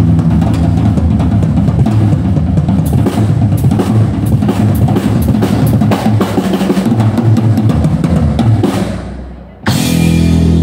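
Live drum kit solo: fast, dense drumming on bass drum, snare and cymbals, with rolls. Near the end the drumming fades away, then a sudden loud accent hit rings out.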